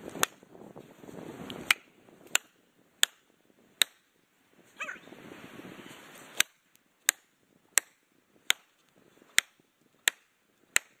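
Plastic felling wedges driven into the back cut of a large tree with sharp hammer blows, about ten strikes in two runs of five, roughly one every 0.7 s, with a pause of about two seconds midway. The wedges are being driven to lift and tip the tree.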